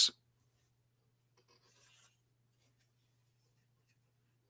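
Near silence: a faint steady low hum, with a brief faint scratching rustle about one and a half seconds in and a few faint ticks.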